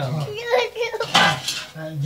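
Metal utensils clinking and clattering, loudest a little past the middle, over a man's voice.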